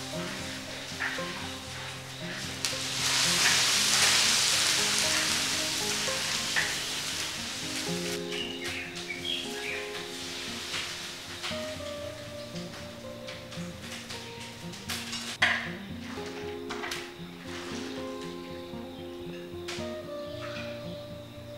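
A hot wok sizzling and hissing for several seconds as steam rises from it, fading away after about eight seconds. This is followed by light clicks of utensils and one sharp knock about fifteen seconds in, over steady background music.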